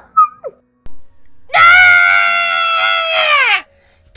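A person screaming a long, high "ahhh", held steady for about two seconds and dropping in pitch as it cuts off. A brief, short cry comes just before it.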